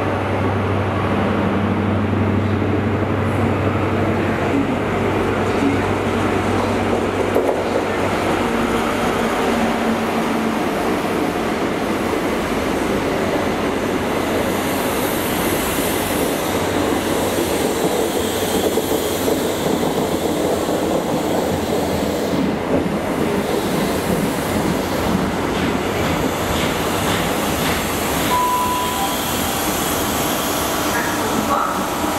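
High Speed Train with a Class 43 diesel power car moving past on the platform road. The engine's low drone is plain for the first ten seconds or so, then the steady rumble and running noise of the coaches' wheels on the rails carries on. A brief single beep sounds near the end.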